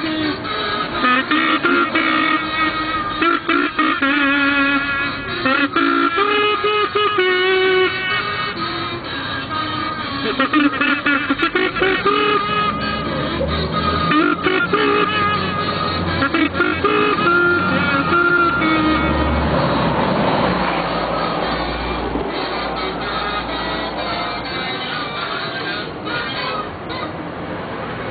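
Recorded ukulele music playing, a sung or buzzed melody over a plucked-string accompaniment, with a low rumble underneath for a stretch in the middle.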